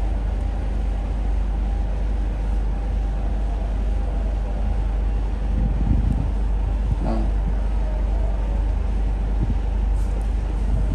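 Steady low background rumble of machinery running, holding an even level throughout, with a brief faint sound about seven seconds in.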